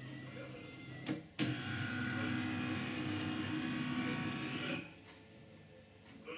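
Scanner unit of an HP LaserJet MFP M28-M31 multifunction printer at work: a click about a second in, then the scan carriage motor runs with a steady whirring whine for about three seconds and stops as the scan finishes.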